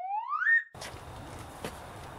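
Video-editing transition sound effect: a single pitched swoop that glides steadily upward, holds for a moment at the top and cuts off about two-thirds of a second in. After it comes faint outdoor background hiss with one small click.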